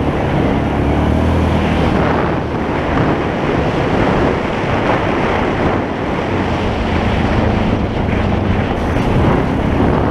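ATV engine running at a steady pace while riding a dirt trail, with heavy wind noise on the microphone over it.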